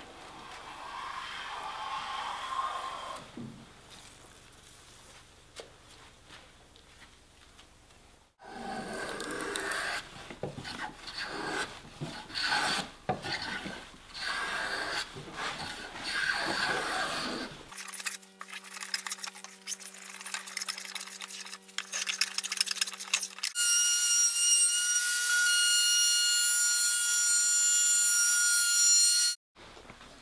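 A hand plane shaving along the edge of a curved wooden handrail piece, in repeated scraping strokes. About three quarters of the way through, an electric router spins up to a steady hum. It then cuts with a loud, high whine for about six seconds, chamfering the edge.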